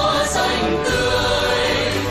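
A mixed choir of men and women singing a Vietnamese patriotic song together over a steady instrumental accompaniment.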